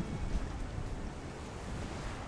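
Steady wind rushing across the microphone, with small waves washing on the shore.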